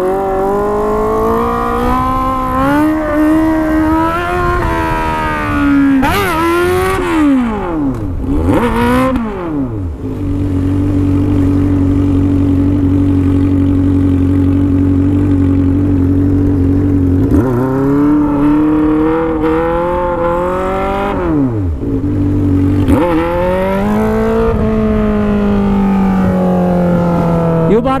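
Honda Hornet 600's inline-four engine running through a stainless steel exhaust under hard riding: the pitch climbs, drops sharply a few times as the throttle is closed, holds steady for several seconds, then climbs and falls back again near the end.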